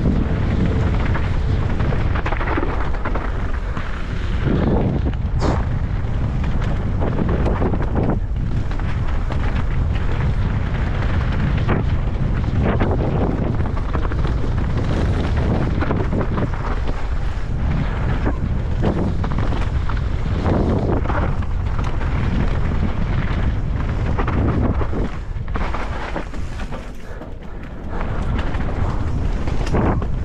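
Wind buffeting a helmet-mounted camera microphone on a fast mountain bike descent, with tyres running over a loose gravel and dirt trail and the bike knocking and rattling over bumps. The rush eases briefly near the end.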